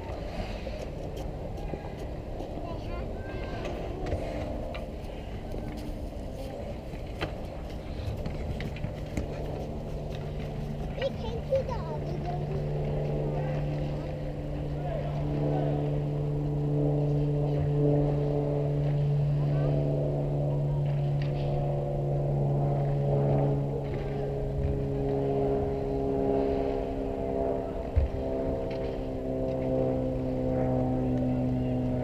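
Ice hockey game ambience: scattered clicks and knocks of sticks, skates and puck, with faint voices. From about eight seconds in, a steady engine hum joins and shifts in pitch near the end.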